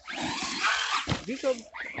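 Traxxas electric RC monster truck driving fast over wet dirt and into the grass: its motor and tyres make a loud rushing noise that fades about a second in. A man's voice exclaims near the end.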